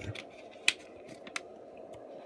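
A plastic water bottle handled and set down on a table: two sharp clicks, the first louder, over a faint steady background hum.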